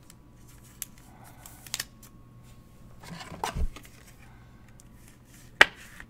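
A trading card is handled and slid into a clear plastic holder: soft plastic rustling and a few light clicks, then one sharp click near the end as the rigid case shuts.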